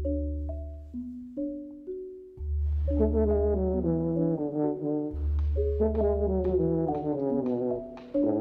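Music: marimba notes over long held low bass notes, joined about three seconds in by a fuller brass-like section of held chords that step downward.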